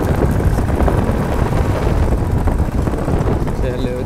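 Single-cylinder Royal Enfield Classic 350 motorcycle riding along a rough dirt road: steady engine running mixed with heavy, uneven wind rumble on the helmet microphone.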